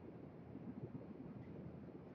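Faint room tone: a pause in a lecture with no distinct sound.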